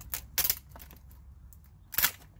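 Handheld packing-tape dispenser being run over wood: a few short, sharp crackles of clear tape pulling off the roll, twice near the start and once more at the end, with quieter handling between.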